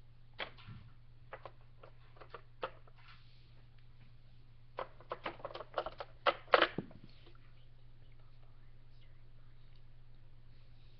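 Small plastic toy pieces clicking and tapping against a plastic toy kitchen playset as they are handled and set down: a few scattered taps, then a quick run of clicks about five seconds in, the loudest near the end of that run.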